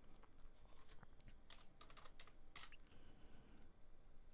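Faint keystrokes on a computer keyboard, a scattered run of light taps as a password is typed in.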